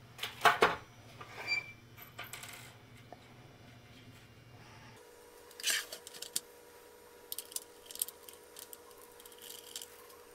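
Sharp clicks and knocks of plastic and metal parts being handled as the CD changer's tray rails are fitted back on, the loudest a pair of clicks about half a second in. Another knock comes just before the six-second mark, and small taps follow later.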